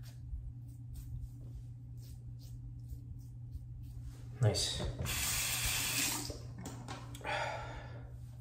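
Tatara Muramasa safety razor scraping through lathered stubble in short, faint strokes, then a bathroom tap running loudly for about two seconds from roughly halfway in, with a shorter run of water near the end.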